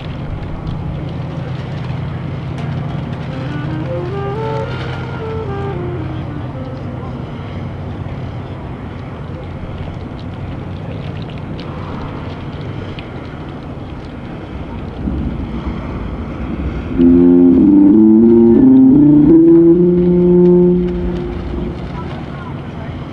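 Marching band instruments warming up before the show: a scale played up and back down, then near the end a short, loud run of notes that settles into a held chord. A steady low rumble of wind on the microphone runs underneath.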